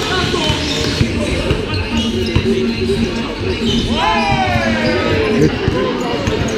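Basketball bouncing on a sports hall floor during play, echoing in the large hall, with voices around the court. About four seconds in someone calls out in a long cry that falls in pitch.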